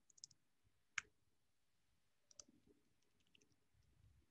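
A few faint, scattered computer keyboard keystrokes, the clearest about a second in, against near silence.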